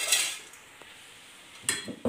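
Steel cooking pots and a spoon clattering and clinking as they are handled: a clatter dying away at the start, then a couple of sharp clinks near the end.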